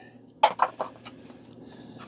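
Clear plastic blister-pack tray crackling and clicking as it is handled, with a cluster of sharp clicks about half a second in, then faint rustling.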